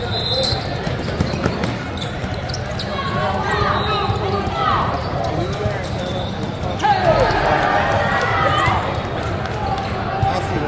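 Live basketball game sound in a large hall: the ball bouncing, and sneakers squeaking sharply on the court as players cut and run, over steady crowd chatter. The squeaks cluster about three seconds in and again near the end, when it gets louder.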